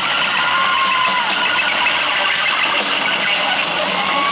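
Live rock band playing loud electric guitars and drums, heard as a dense, distorted wall of sound through an overloaded handheld camera microphone, with a brief sliding note about half a second in.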